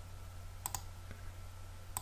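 Two faint computer mouse clicks, about a second and a quarter apart, each a quick double tick of a button press and release, over a steady low hum.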